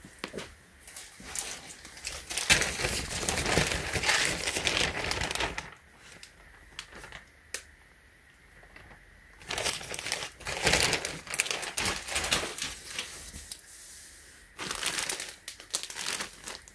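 Plastic shipping mailer bag crinkling as hands rummage inside it, in two long spells with a quieter gap in the middle.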